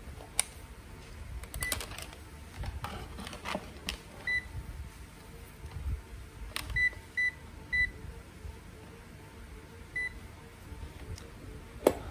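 Digital multimeter beeping: about six short, high single-pitch beeps, three of them close together in the middle, as its dial and buttons are worked. Sharp clicks and knocks from handling the meter and test leads come in between, the loudest near the start and just past the middle.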